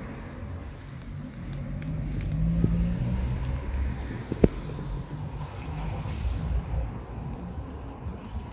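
Low rumble of a car passing on the street, swelling about two seconds in and fading away, with a single sharp click midway. Faint crunching of a cat chewing dry kibble runs underneath.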